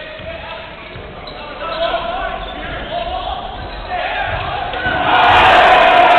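Live basketball game sound in a sports hall: a ball bouncing on the hardwood court with voices of players and spectators, the crowd getting louder about five seconds in.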